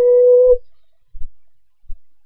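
A girl's voice holding one drawn-out sung note that rises slightly and cuts off about half a second in. It is followed by dull, low thumps about every two-thirds of a second.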